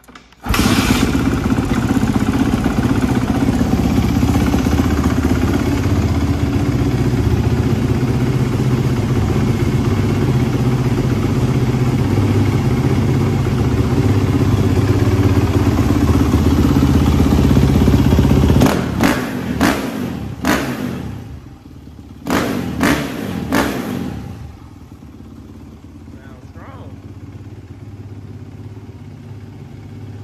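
A 2013 Suzuki RM-Z450's single-cylinder four-stroke engine starts about half a second in and runs loud and steady. Between about 19 and 24 seconds it takes a few short blips of throttle, then settles to a quieter, even idle. This is its first run after a bottom-end and transmission rebuild.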